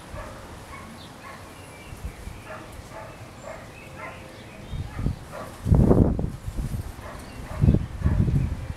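Dogs barking in the distance, short calls repeated over a steady outdoor background noise, with a few louder low bursts about six seconds in and again near the end.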